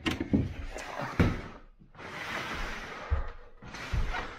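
A yellow plastic crate being gripped, lifted and carried. The plastic-wrapped contents crinkle and rustle, with sharp knocks early on and low thuds near the end as the crate is handled and set down.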